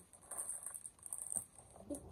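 Soft plastic packet of wet wipes crinkling and rustling in short bursts as it is picked up and handled.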